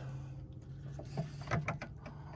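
Faint clicks and rubbing as a bungee cord and its hooks are moved up the camper pop-top's lift struts. The clicks come mostly in the second half.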